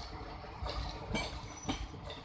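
Empty passenger coaches rolling past, their wheels clacking over rail joints about twice a second over a steady low rumble, each clack with a thin metallic ring.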